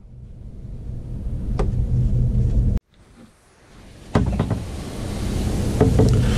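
Low rumbling noise that swells, breaks off abruptly a little under halfway through, and comes back about a second later with a few light clicks.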